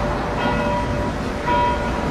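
Church bells ringing, struck about once a second, each stroke ringing on into the next.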